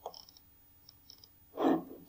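A few faint, short clicks, then a brief vocal sound from a man near the end.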